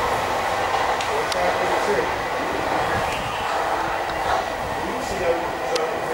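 Southern Class 313 electric multiple unit pulling away down the line, a steady running noise from its wheels and motors.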